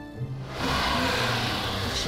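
Cartoon soundtrack: background music, joined about half a second in by a loud, rushing, noise-like sound effect that holds steady.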